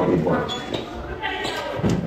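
Speech: a voice talking, in words the transcript did not catch.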